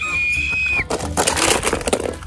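A high, steady tone cuts off just under a second in. It is followed by about a second of dense crackling and rustling as a boy pushes through brush and snatches plastic toy cars up off a wooden board.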